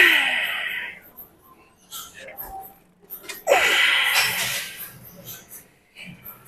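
A man's forceful, voiced exhalations of effort while lifting a heavy load on a leg curl machine: one right at the start and another about three and a half seconds in, each about a second long and falling in pitch.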